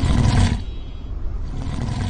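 Lion-roar sound effect from TikTok Live's 'Lion' gift animation: a deep roar, loudest in the first half second and then easing off.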